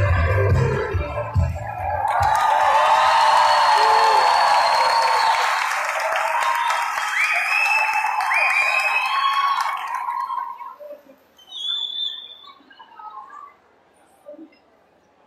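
Recorded dance music playing over the hall speakers stops about two seconds in. Audience applause with cheering voices follows, fading out about three quarters of the way through.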